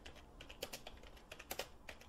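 Computer keyboard typing: a quick, uneven run of faint keystrokes.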